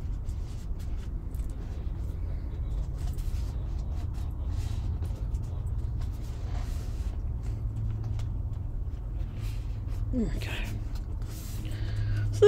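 Paper being handled on a journal page: faint scattered rustles and light taps over a steady low hum. A brief murmured voice sound about ten seconds in.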